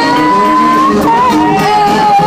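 Live rap-funk band playing, with one long high note that slides up, holds for about a second, then drops lower and wavers.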